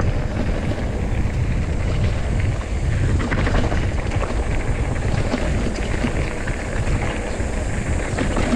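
Wind buffeting the microphone as a mountain bike rolls down a dirt trail, with a steady rumble of tyres and scattered small rattles and clicks from the bike.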